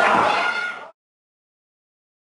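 Wrestling crowd shouting and cheering, with a high drawn-out voice standing out over it. The sound cuts off abruptly about a second in and is followed by silence.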